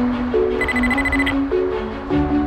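Background music, a steady melodic line of sustained notes. About half a second in, a short burst of rapid, high electronic beeps, roughly fifteen a second, runs for under a second.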